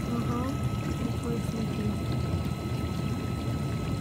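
GE dishwasher running, with water pouring and sloshing inside the tub over a steady low hum and a thin, constant high tone.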